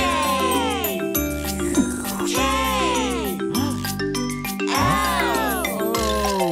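Children's cartoon background music: a bouncy tune of stepping notes with tinkling, chime-like sounds and repeated swooping pitch slides over it.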